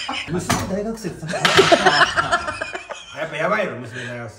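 Small hard toys, minicars among them, clattering and clinking against each other as hands rummage through a box. A dense burst of clatter comes about a second and a half in, under laughter and talk.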